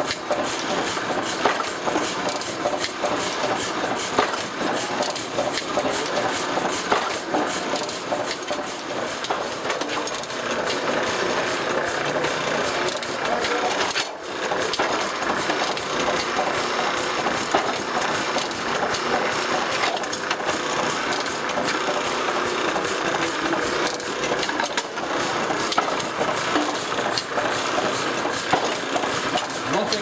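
Platen letterpress printing press running, its moving parts clattering in a steady repeating rhythm as sheets are hand-fed for debossing, with a brief break about halfway through.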